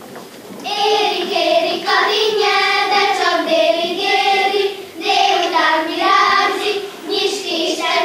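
A group of young girls singing a Hungarian folk song together, starting just under a second in, with a brief breath-break about halfway.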